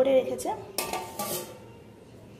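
A stainless steel plate set down over a steel bowl as a lid: a short metallic clatter about a second in, with a faint ring fading after it.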